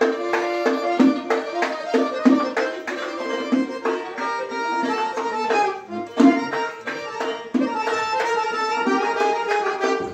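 Accordion playing a Khorezm folk tune in sustained chords and melody, with a hand-played frame drum (doira) keeping a steady beat.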